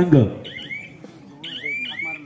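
Short high whistles that rise in pitch: one about half a second in, then two more close together near the end, over faint background voices.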